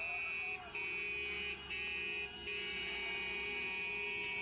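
A car horn held down in long blasts, steady in pitch, with three short breaks in the first two and a half seconds.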